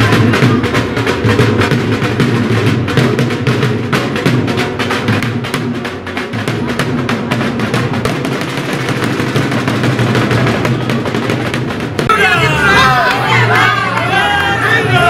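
Rapid, continuous drumming like a drum roll over a steady low hum. About twelve seconds in the drumming stops and a crowd starts shouting.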